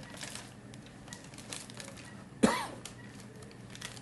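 A single sharp cough about two and a half seconds in, over faint clicks and plastic rustling from equipment being handled.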